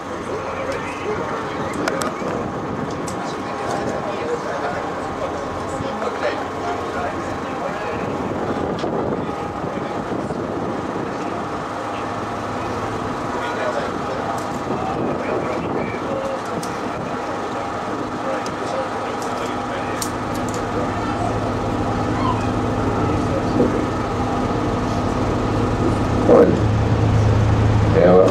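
Passengers chattering aboard a river cruise boat, many voices at once with no single clear speaker, over the boat's engine running. The low engine hum grows louder in the second half.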